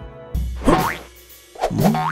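Cartoon transition sound effects over music: a low thump about a third of a second in, then springy boing glides, the last one falling in pitch near the end.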